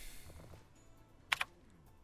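Mostly quiet, with a game sound fading out at the start, then a sharp double click a little past halfway and a few fainter clicks around it.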